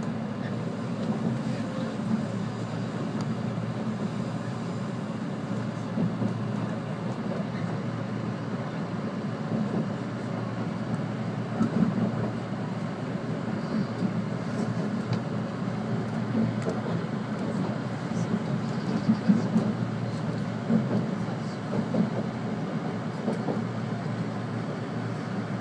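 Running noise heard inside the passenger car of a JR 485-series electric train: a steady low rumble of wheels on rails, with a few irregular louder bumps.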